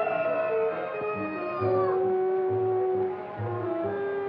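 A man imitating animal calls with his voice in long, wavering cries that bend in pitch, over film music with a steady low pulse.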